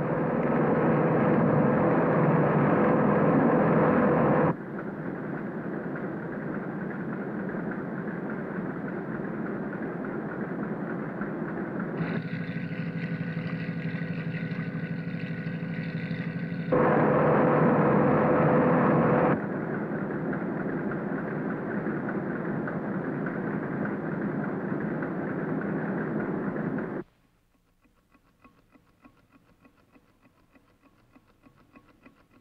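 Cartoon sound effect of a boat's engine and churning water: a steady, dense rumble, louder for the first few seconds. Partway through, a ringing sound with steady tones takes over for about five seconds, and the rumble then returns. The rumble cuts off abruptly a few seconds before the end, leaving near silence.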